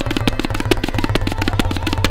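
Tabla solo in fast teentaal: a dense, even stream of sharp right-hand dayan strokes, well over ten a second, mixed with deep bayan bass strokes. A sarangi faintly holds the repeating accompanying melody (lehra) underneath.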